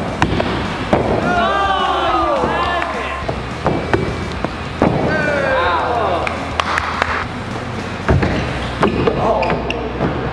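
Young men crying out drawn-out, falling 'ooh'/'whoa' exclamations three times, reacting to parkour attempts. Between the cries come sharp thumps of feet striking the walls and floor, over a steady low hum.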